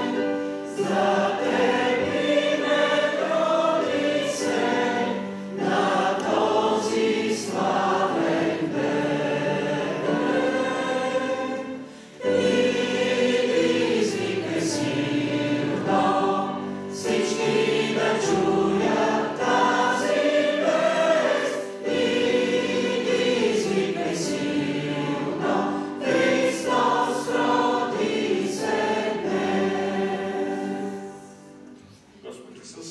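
Church choir singing a hymn in several parts, in long sustained phrases, with a short break between phrases about twelve seconds in.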